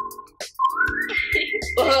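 Added sound effect for a magic spell: a whistle-like tone gliding upward and holding, with background music coming in near the end.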